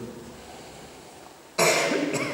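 A person coughing once, loudly and suddenly, about a second and a half in, after a stretch of low room tone.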